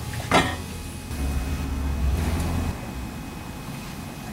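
A single sharp knock about a third of a second in, then a low rumble for about a second and a half, over steady room noise.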